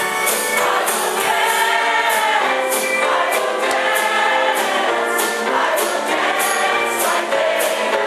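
A large mixed choir singing a lively gospel song live, many voices together, over a steady percussive beat.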